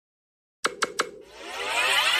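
Animated title sound effect: after a short silence, three quick clicks, then a rising sweep of noise that swells louder and cuts off suddenly.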